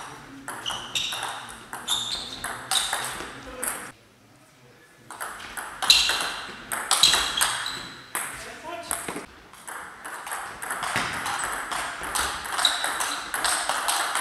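Table tennis rallies: the celluloid ball clicking off the bats and bouncing on the table in a fast, irregular run of sharp pings. The run breaks off for about a second around four seconds in, then a new rally starts.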